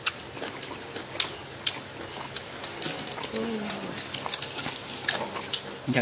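Mealtime eating sounds: scattered light clicks and crunches of crisp bánh xèo and fresh greens being bitten and chewed, with dishes and chopsticks tapping now and then.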